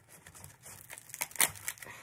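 Self-adhesive Velcro dots being peeled apart and off their backing: a short run of crackling, tearing sounds, with the sharpest snap about one and a half seconds in.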